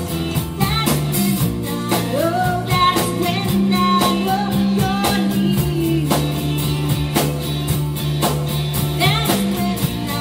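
Live band music, a slow song played on guitars and keyboard over sustained bass notes with a steady beat, and a melody line that bends up and down in pitch.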